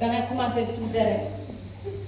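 Speech only: a voice speaking for about the first second, then a short pause, over a steady low electrical hum.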